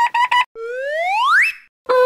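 Cartoon sound effects: a few quick high-pitched tones, then one whistle-like tone sliding steadily upward in pitch for about a second, and a short lower tone near the end.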